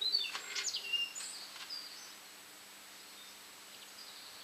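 A small bird chirping a few short, high calls in the first second and a half, then only a faint steady hum of room tone.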